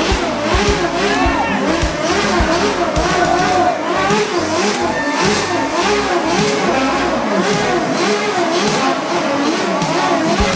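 Street noise at a car rally: car engines running, with many overlapping voices from the crowd.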